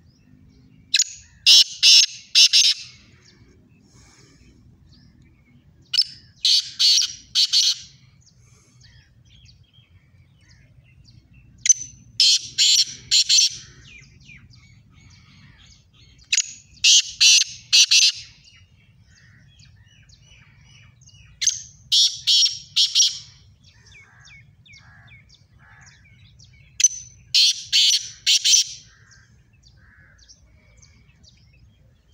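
Black francolin calling: a loud phrase of four quick notes, given six times about five seconds apart.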